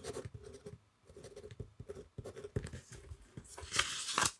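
Pen writing a word on a sheet of paper in quick, scratchy strokes. A louder rush of noise comes near the end.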